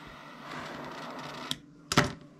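Butane jet-torch lighter flame hissing steadily while melting cut paracord ends, cutting off suddenly about a second and a half in, followed by a sharp click near the end.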